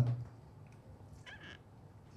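A man's voice holding the last syllable of a word into a microphone, cut off just after the start. Then quiet hall room tone with only a faint brief sound about a second and a half in.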